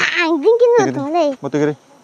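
A young child's high voice calling out in long, wavering, sing-song cries, several in a row with short breaks, stopping shortly before the end.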